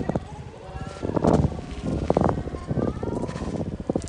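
Outdoor voices of people nearby, with short calls, one rising in pitch about two seconds in, over irregular footsteps on stone paving.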